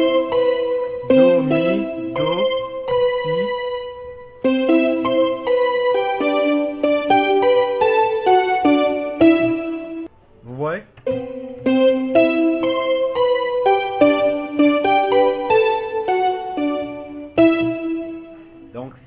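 Yamaha portable keyboard playing a melodic solo, single notes moving over held chords, with a short break about ten seconds in.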